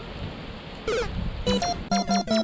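Steady low outdoor rumble for the first second, then a short rising electronic sound effect. About a second and a half in, bouncy plucked synth music starts, with short separate notes.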